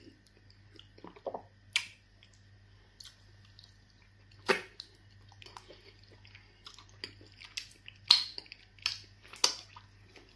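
Close-miked eating sounds of a person chewing a mouthful of fufu and stew. Soft wet chewing is broken by sharp smacks at irregular moments, a cluster of the loudest coming near the end, over a steady low hum.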